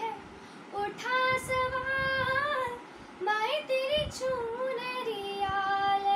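A girl singing unaccompanied: after a short pause, a phrase with a gently wavering held note, a quick breath, then a second phrase that settles onto a long steady note near the end.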